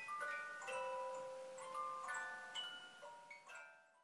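A slow, tinkling melody of single bell-like struck notes, each ringing on after it is struck, about two notes a second; it fades away near the end.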